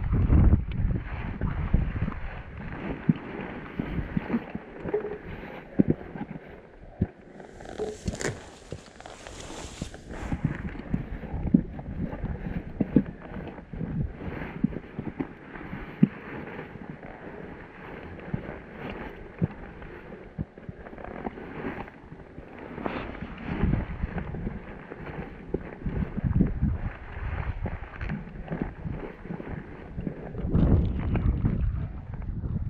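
Footsteps crunching and knocking irregularly on a rocky mountain path, with wind gusting over the microphone. A brief hiss about eight seconds in lasts a couple of seconds.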